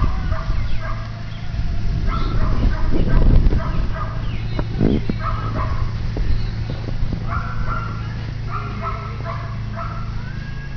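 Vinyl of an inflatable whale squeaking and rubbing in short, irregular squeals as a person's body weight presses the air out of it to deflate it, over a steady low rush.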